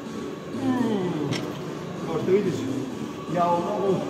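A man's voice: falling, drawn-out vocal sounds with no clear words, then the start of speech near the end, with one short click or clank about a second in.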